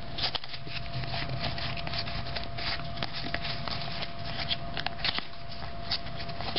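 Football trading cards being handled and spread through the fingers from a freshly opened pack, a steady light rustle of card stock with many small clicks.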